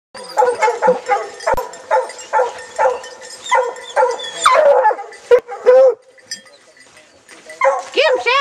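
Hound barking up a tree at about two barks a second: the tree bark of a hound that has a bear treed. The barking pauses for about a second and a half and starts again near the end.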